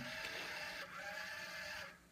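Faint whine of small hobby motors driven by an L293D motor shield on an Arduino Uno, the pitch dipping and rising again twice, over a steady low hum. The sound cuts off abruptly near the end.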